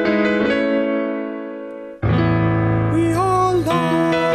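Piano accompaniment track playing chords that fade away; about halfway through it cuts abruptly to louder piano chords, and a man's voice comes in singing along over them near the end.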